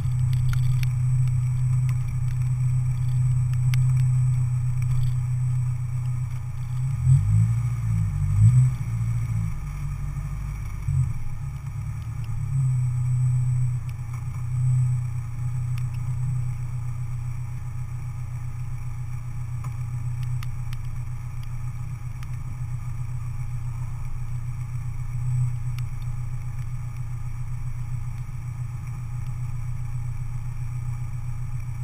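Car engine running at low speed, a steady low hum, with the engine note shifting and briefly louder about seven to eleven seconds in as the car rolls slowly. It then settles to a steady idle.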